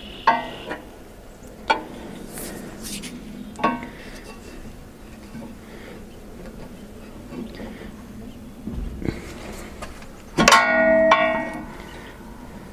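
Sharp metallic clinks with short ringing, as tools and steel parts of the wood chipper's flywheel assembly are handled during a flywheel play check: three distinct clinks in the first four seconds, light ticking after, and a louder ringing clang about ten and a half seconds in that lasts about a second.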